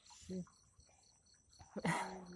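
Crickets chirping steadily and faintly, a thin high continuous trill. A brief low human sound comes about a third of a second in, and a louder short noisy burst near the end.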